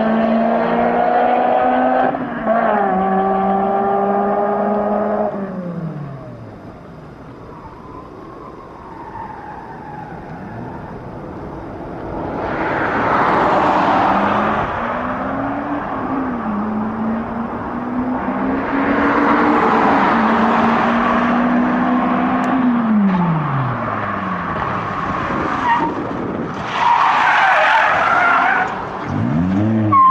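Toyota Celica with an aftermarket Veilside titanium exhaust accelerating through the gears: the engine note climbs, drops at a shift about two seconds in, climbs again and dies away after about five seconds. Later the engine note returns at a steadier pitch, with three loud rushing swells of noise.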